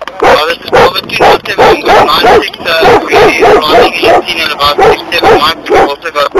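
A dog barking and yelping over and over, about three loud barks a second without a break.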